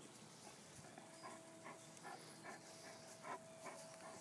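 Faint, rhythmic panting of a Great Dane, about two to three breaths a second, over a faint steady hum.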